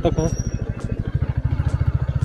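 Motorcycle engine running steadily with an even, rapid beat while the bike is ridden over a rough, rocky dirt road.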